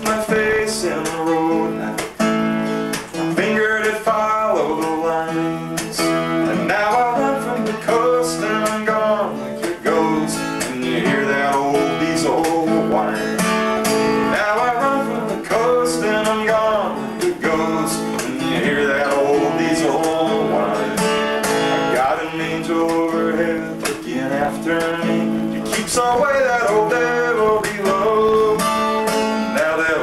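Acoustic guitar strummed and picked, playing a country-style song accompaniment.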